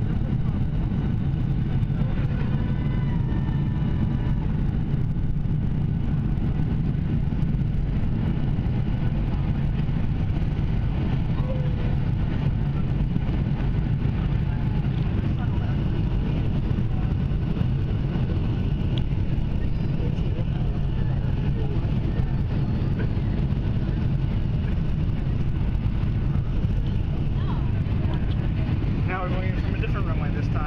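Steady low roar of a Boeing 757 in flight, engines and rushing air heard from inside the passenger cabin on final approach.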